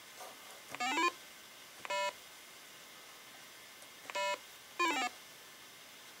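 Electronic beeps from a device: a quick rising run of tones about a second in, two single steady beeps, then a quick falling run of tones near the end.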